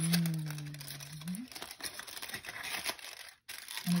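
A drawn-out hummed "mmm" that rises at its end, then aluminium foil crinkling as a foil cover is pulled off a bowl and crumpled.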